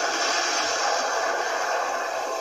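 Steady rushing noise from a cartoon's sound effects for an iceberg-and-water scene, played through a handheld device's small speaker.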